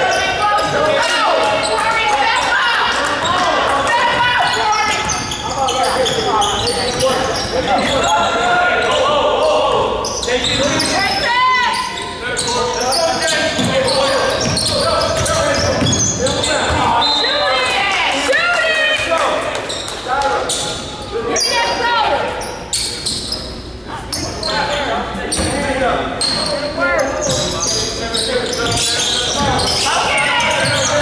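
A basketball bouncing on a hardwood gym floor during play, with indistinct voices of players and spectators calling out, echoing in a large gym.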